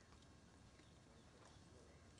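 Near silence, with faint clip-clop of the ceremonial carriage horses' hooves.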